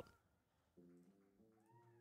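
Near silence, with a faint held pitched sound starting about a second in and bending up and down in pitch near the end.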